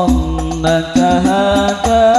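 Al-Banjari sholawat: a male voice singing a drawn-out, wavering Arabic line into a microphone over banjari frame drums beating a steady rhythm.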